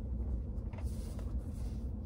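Car engine idling, a low steady rumble heard inside the cabin, with a faint rustle about a second in.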